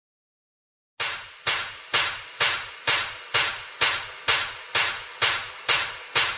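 After a second of silence, sharp percussive hits at a steady dance tempo, about two a second, each fading quickly: the opening beat of a dance track.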